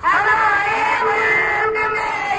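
A group of young voices singing in unison, a sung line that starts abruptly and holds long notes.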